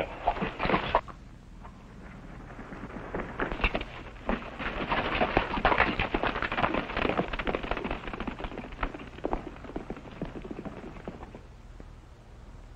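Horses' hooves beating on a dirt trail at a run: irregular knocks that build from about three seconds in and fade away near the end.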